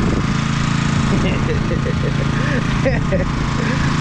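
An engine running steadily at a constant speed, a low even hum with no revving.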